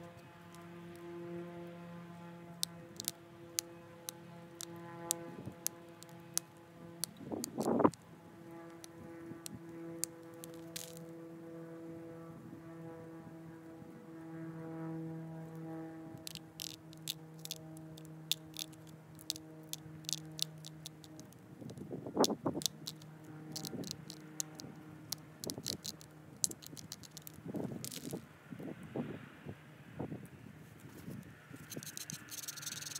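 Antler pressure flaker working the edge of an agatized coral Clovis point: sharp little clicks as small flakes pop off, in runs of rapid clicks over the second half, with two louder, longer noises about eight seconds in and about twenty-two seconds in. A steady droning hum runs underneath through most of it.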